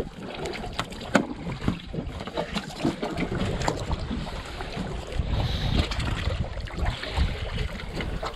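Wind and water lapping around a small boat, with scattered small clicks and knocks from handling line and tackle; one sharper knock comes about a second in.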